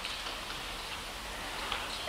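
A pause between speech: steady faint hiss of hall room tone, with a few faint ticks.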